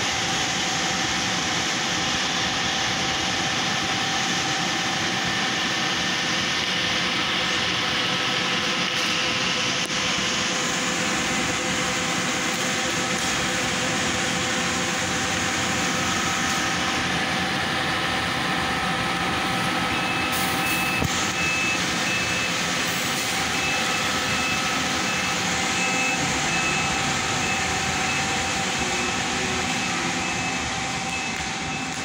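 Intercity diesel coach engine running steadily as the bus pulls away from its bay, with a constant hum. From about two-thirds of the way through, a short high beep repeats at intervals over it.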